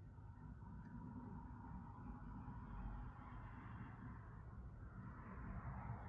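Faint, soft hiss of a wide bristle paintbrush dragged slowly and lightly through wet paint on a canvas, over a low room rumble.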